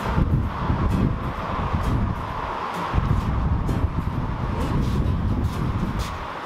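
Wind buffeting the microphone: an uneven, gusting rumble.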